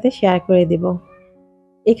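A woman's voice for about a second over soft background music, then a short pause with only the music before she speaks again near the end.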